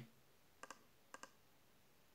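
Near silence with two pairs of faint computer mouse clicks about half a second apart.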